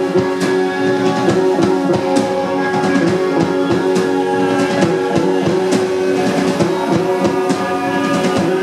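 A band playing live: a drum kit keeping a steady beat under sustained guitar.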